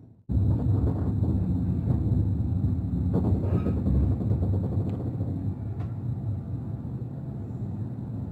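VR Intercity train running along the track, heard inside the passenger carriage: a steady low rumble that cuts in just after a moment of silence and slowly quietens toward the end.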